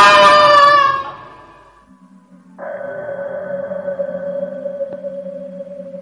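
A loud sound effect with many tones fades out over the first second. After a short lull, a steady eerie drone with one held tone over a low hum starts about two and a half seconds in: horror background music.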